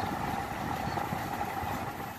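Steady cabin hum of a Toyota Prado idling with its air-conditioning running: a low rumble with a faint steady tone above it.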